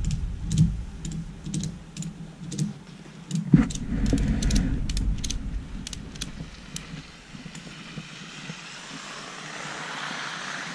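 Ratchet tie-down strap being cranked tight: a run of sharp, irregular clicks, with one louder thump a few seconds in and a low rumble under the first few seconds.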